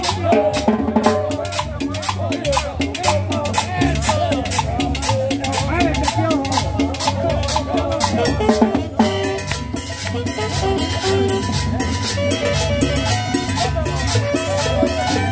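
A live street band plays upbeat Latin dance music, with conga and drum-kit percussion keeping a fast, steady beat. Voices sound over it in the first part. About nine seconds in, the music changes to held, steady notes.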